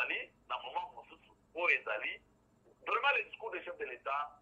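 Speech only: a person talking in bursts of syllables with short pauses between them.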